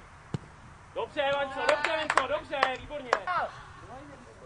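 A single sharp thud, like a football being kicked, about a third of a second in, followed by loud shouting for about two and a half seconds with a few sharp knocks among the shouts.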